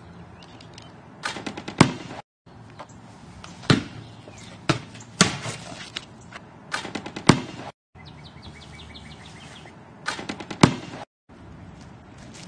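Basketball bouncing on pavement: sharp, loud thuds, several in quick clusters, with the sound cutting out briefly three times.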